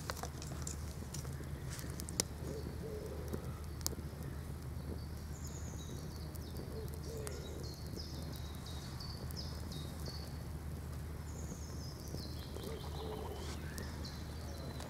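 Small fire of dry twigs and grass crackling with a few sharp pops, while a songbird sings two runs of high, descending notes over a low steady rumble.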